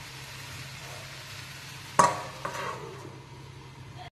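Sponge gourd and onions sizzling gently in a frying pan. About two seconds in, a steel plate set over the pan as a lid lands with a metallic clank and a short ring, then a lighter knock as it settles.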